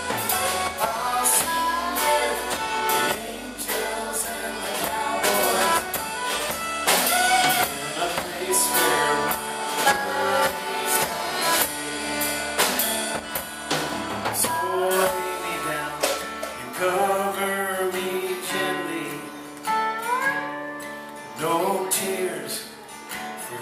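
Live band playing a country-folk song: acoustic guitar, electric guitar, drum kit and fiddle, with a melody line that slides between notes.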